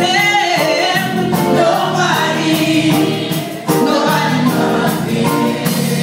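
Gospel choir singing, loud and continuous, with a brief dip in the sound about halfway through.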